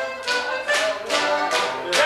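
A morris dance tune played on folk instruments, with sharp strikes about twice a second keeping time with the dance.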